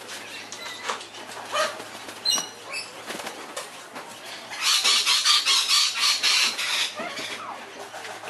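Long-billed corella flapping its wings while perched on a hand: softer scattered flutters, then a run of rapid wingbeats lasting about two seconds from the middle.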